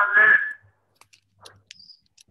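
A drawn-out hesitant "uh" from a voice over a video-call connection, fading out within the first half second. Faint clicks follow, then a brief high tone near the end.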